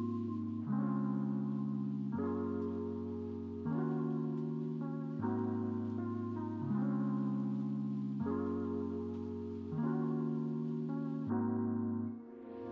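Instrumental background music: soft held chords, each starting firmly and fading, changing about every one and a half seconds.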